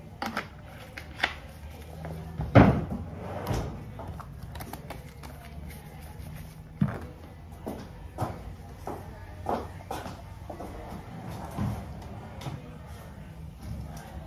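Irregular knocks, clunks and clatters of salon supplies being handled and set down, such as plastic colour and developer bottles and cabinet doors, the loudest about two and a half seconds in.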